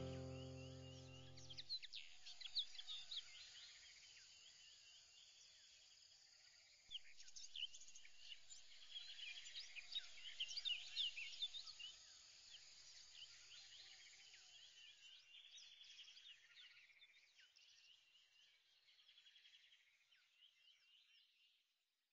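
Background music ends about two seconds in, leaving faint birdsong: many short, quick chirps that thin out and fade away just before the end.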